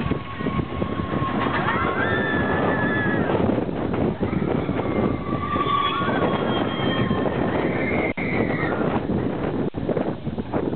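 Mine-train roller coaster running along its track: a loud, steady rattle and rumble with wind on the microphone. Riders give several drawn-out calls over it.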